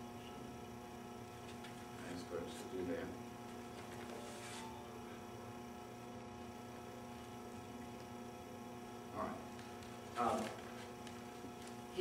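Steady electrical mains hum with a stack of even tones, and a few faint short sounds over it.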